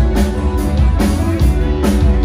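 Live rock band playing an instrumental passage: electric guitar over a drum kit beat, with no vocals.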